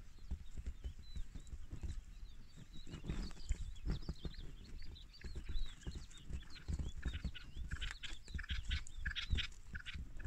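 Small birds chirping: many short rising and falling calls that grow thicker and louder near the end, over low rumbling and thumps.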